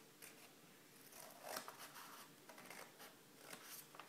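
Scissors cutting a slit into folded paper: several faint, soft snips spread over a few seconds.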